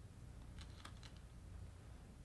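A few faint clicks of go stones about half a second to a second in, over a low steady hum.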